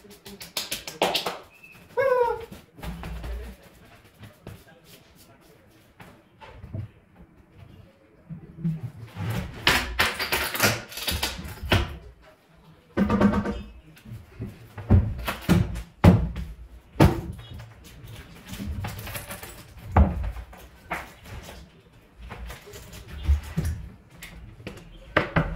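Irregular knocks, thuds and clatter of boards and tools being handled on a plywood workbench, louder and busier in the second half. About two seconds in there is a brief run of chirping squeaks.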